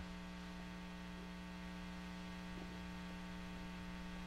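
Steady electrical mains hum in the recording: a faint, unchanging hum made of many evenly spaced stacked tones.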